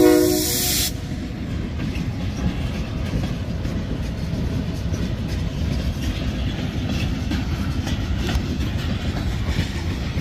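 A train horn sounds briefly at the start and cuts off about a second in. A freight train of covered hopper cars then rolls past with a steady low rumble and the clickety-clack of wheels over the rail joints.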